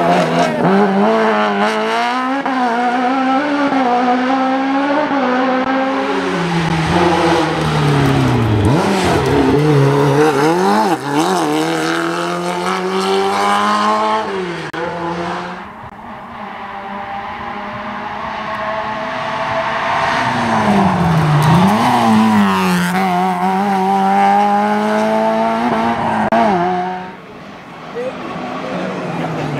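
Competition car engines at full throttle on a hillclimb, each pitch climbing and then dropping again as the cars shift up through the gears and pass. The sound drops and a new car takes over about halfway through and again near the end.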